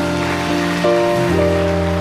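Congregation applauding over background music: held chords that change twice in quick succession.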